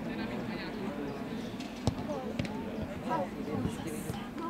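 Distant shouts and calls from players and onlookers across an open football pitch, with two sharp thuds of the ball being kicked about two seconds in.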